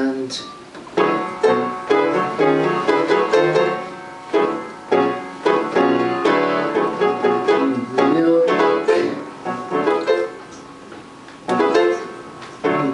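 Piano playing an instrumental passage: chords and runs of struck notes that ring and die away, dropping quieter for a moment near the end before a loud new chord.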